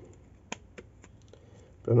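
Metal duckbill hair clip clamped onto a ribbon bow: one sharp click about half a second in, then a couple of fainter ticks.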